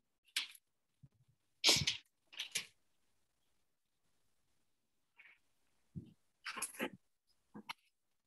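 Handling noise from a laptop being picked up and carried: about six short knocks and rustles, spread across the few seconds, with dead silence between them.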